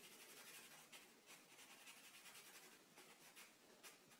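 Faint scratching of a black felt-tip marker on paper, scribbling back and forth to fill in a small circle.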